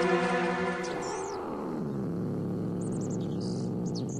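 A held synthesizer chord that gives way about a second in to a low, rough, drawn-out cat sound effect: the voice of an enraged cat.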